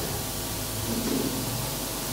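Steady, even hiss of background noise from the microphone and sound system, with a faint low murmur about a second in.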